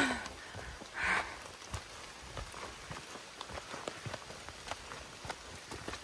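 Light rain falling on leaves and rain gear, a faint steady patter of many small drops, with the soft steps of hikers and trekking poles on a wet dirt trail. A short breathy sound comes about a second in.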